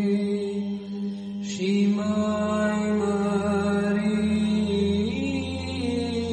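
Romanian Orthodox psaltic (Byzantine) chant: a sung melodic line over a steady held drone (ison). There is a short break for breath about a second and a half in, then the melody moves to new pitches about two seconds in and again near the end.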